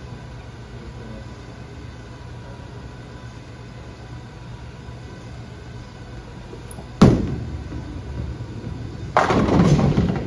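A Storm Absolute bowling ball lands on the lane with a sharp thud about seven seconds in and rolls away. About two seconds later pins crash, the loudest sound here, over the steady hum of the bowling alley.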